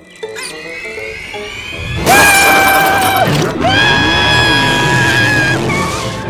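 Cartoon soundtrack of music and sound effects: rising, sliding tones, then about two seconds in a sudden loud, held high note that breaks off briefly and comes back for about two more seconds.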